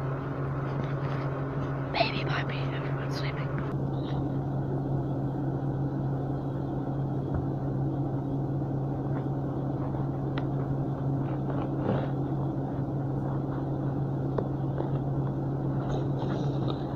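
A steady low hum throughout, with a brief faint voice about two to four seconds in and a few light clicks.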